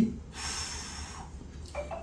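A man's breathy exhale, a single hiss of air lasting about a second.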